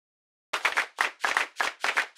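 A run of sharp claps in a steady rhythm, about three a second, starting half a second in.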